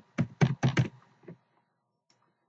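Computer keyboard typing: a quick run of keystrokes in the first second and one more about 1.3 s in, as a room name is typed into a label.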